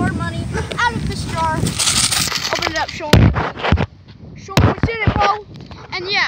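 A boy talking, with two sharp, loud thumps about three and four and a half seconds in.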